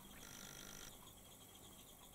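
Near silence: room tone, with faint thin high tones that come and go twice.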